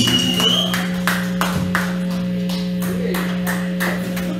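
Live rock band music: a held note sustains steadily under evenly spaced percussive hits, about three a second.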